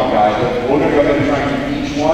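Speech: a man talking continuously into a handheld microphone in a large gymnasium.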